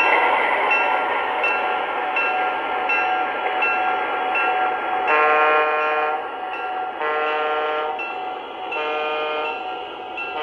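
MTH Protosound 2 sound system of a Union Pacific gas turbine model locomotive, playing its bell, which rings about every 0.7 s over a steady rushing running sound. From about halfway, the horn sounds two long blasts and then a shorter one near the end.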